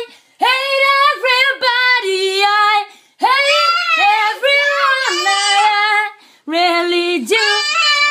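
A woman singing unaccompanied in a high voice close to the microphone: three long phrases of held, sliding notes with short breaks between them.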